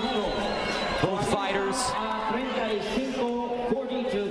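A man's voice over the arena's public-address system, echoing and drawn out, announcing the judges' scores to the crowd.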